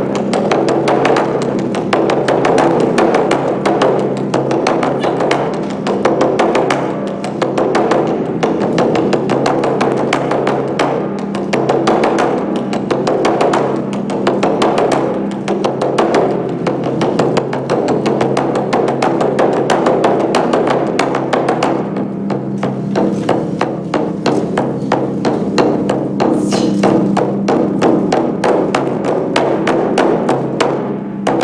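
Large Japanese taiko drums beaten with wooden bachi sticks in a fast, dense rhythm, loud and unbroken, with a sharp wooden click to many strokes.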